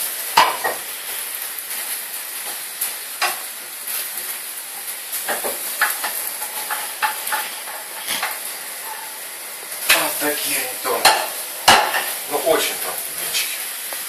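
Thin pancakes sizzling in two frying pans, with a steady hiss. A wooden spatula knocks and scrapes against the pans as they are handled, with a cluster of clatters a few seconds before the end.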